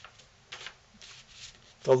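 Fingertips touching and sliding a strip of cardstock on a paper-covered tabletop, a few faint brief rustles.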